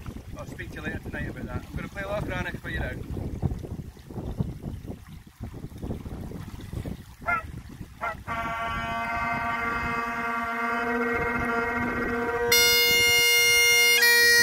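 Great Highland bagpipe being struck up: after a couple of short squeaks, the drones come in about eight seconds in as a steady held chord, and the chanter joins, louder and higher, near the end as the tune begins. Before that there is wind on the microphone.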